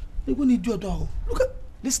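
Speech: a man talking, with short voiced interjections and the start of a spoken reply near the end.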